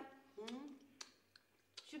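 Light clicks of coffee cups on saucers, one sharp click about a second in and a fainter one after it, in a quiet room between short bits of women's speech.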